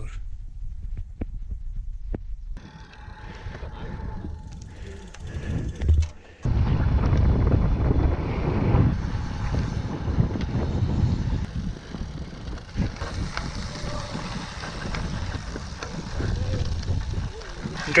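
Wind noise on the microphone of a camera riding along on a moving bicycle, mixed with tyre noise on the road. It is quieter at first and becomes loud and steady from about six seconds in.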